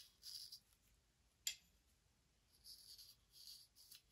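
Near silence, with faint scratchy strokes of a small paintbrush working wood stain into the crevices of a wooden frame, and one sharp click about a second and a half in.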